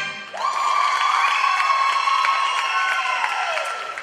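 Audience applauding and cheering as the music ends. A long, high-pitched cheer rides over the clapping and falls in pitch near the end.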